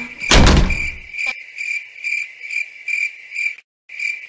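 A single loud thud like a door being shut, then a crickets-chirping sound effect in a steady high rhythm: the comic 'crickets' cue for an awkward silence. The chirping drops out for a moment shortly before the end and then resumes.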